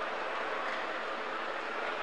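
A large congregation praying aloud together: a steady murmur of many overlapping voices filling a big hall.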